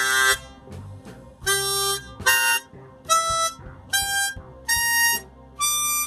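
Freshly retuned diatonic harmonica played as six short separate notes, about one a second, each a step higher than the last as the player works up the harp to check its tuning.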